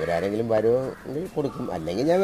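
A man's voice speaking in two short phrases.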